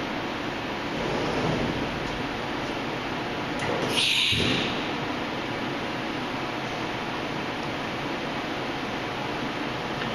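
Sliding enclosure door of a Haas Super Mini Mill 2 being opened, giving one short swish about four seconds in, over the steady hum of the powered-up mill and shop ventilation.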